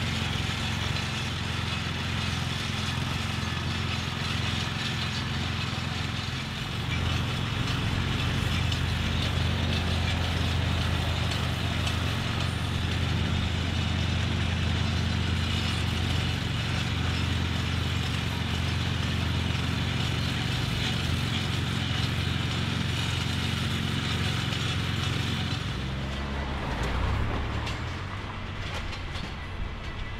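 Rail web grinder running steadily: its small petrol engine drives a grinding wheel against the steel rail web, cleaning it for flash-butt welding. The sound changes about 26 seconds in.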